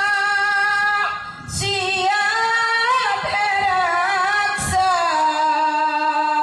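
A woman singing solo into a microphone, unaccompanied: long held notes with sliding, wavering ornaments, broken by two short breaths.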